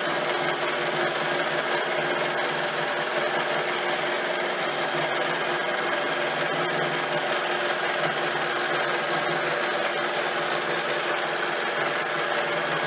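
Domestic sewing machine on a quilting frame, running steadily as it stitches free-motion stippling across a blanket.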